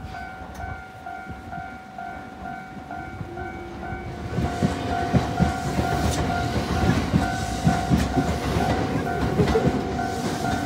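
Japanese level-crossing warning bell ringing in a steady repeated electronic chime. From about four seconds in, a train passes, its wheels clacking over the rail joints and louder than the bell.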